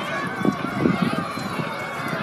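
Footsteps of children in sneakers walking past close by on a concrete walkway, a few heavier steps thudding about half a second and a second in, over indistinct chatter of children's voices.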